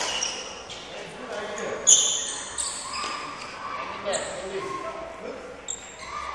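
Sports shoes squeaking and stepping on an indoor court floor as a badminton player moves through footwork, several short squeaks, the sharpest about two seconds in.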